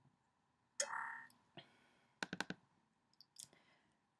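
Soft clicks from a computer's pointing device while files are selected and zipped: a quick run of four clicks about two seconds in and a couple more near the end. A brief short sound comes about a second in.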